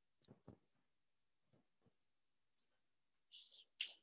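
Chalk on a chalkboard: faint taps and short scratching strokes as numbers are written, with a quick run of strokes near the end.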